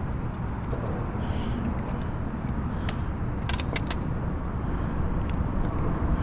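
Steady low outdoor rumble, with a short cluster of sharp clicks and taps about three and a half seconds in as a small mangrove snapper is swung aboard and handled over a fibreglass boat deck.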